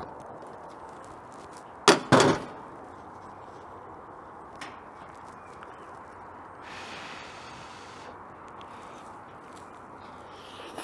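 Two sharp clacks in quick succession about two seconds in, a utensil knocking against the steel tabletop while a pizza is cut and served. Under it, the steady rush of the gas broiler's burner running.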